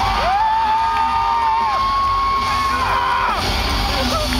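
Rock concert crowd cheering and whooping, with several long, high held cries that slide up, hold and fall away. The band's deep sound drops low underneath.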